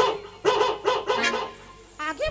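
A high-pitched voice giving a quick run of short wordless cries, each rising and falling in pitch, fading out after about a second and a half.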